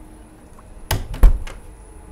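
A door being handled: a sharp click about a second in, then a heavy thump and a lighter knock, the thump the loudest sound.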